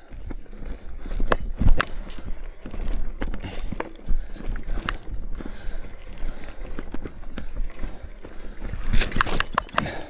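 Mountain bike coasting down a dirt forest trail: tyre noise on loose soil with irregular knocks and rattles from the bike over bumps and roots.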